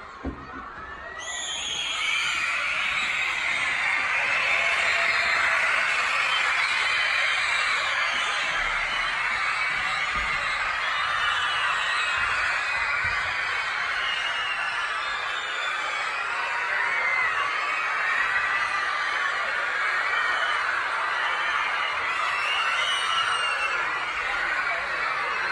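A large crowd of young schoolchildren screaming and cheering, rising sharply about a second and a half in and then staying loud and steady.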